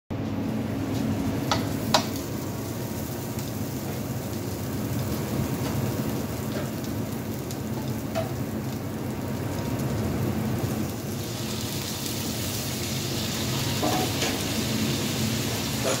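Pork pieces frying in oil in a frying pan, a steady sizzle that grows brighter about eleven seconds in. A few sharp metal clicks near the start, the loudest about two seconds in, over a low steady hum.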